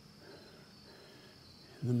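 Faint, steady high chirring of crickets as a night ambience. A man's voice begins speaking just before the end.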